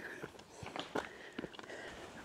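Footsteps on the loose stones of a dry rocky creek bed: a few faint, uneven knocks and crunches as the rocks shift underfoot.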